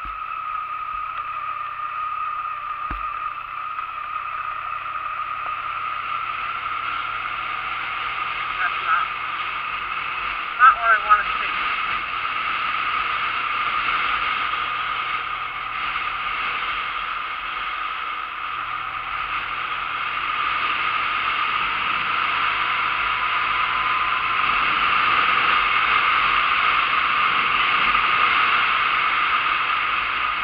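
Honda Nighthawk 250 motorcycle riding steadily along a road, its engine running under a constant wash of wind noise on the camera microphone, getting a little louder in the last third. Several short, sharp wavering sounds cut in about nine and eleven seconds in.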